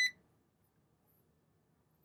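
A single short, high-pitched electronic beep from a Xantrex Freedom HF inverter/charger as it powers up on AC input.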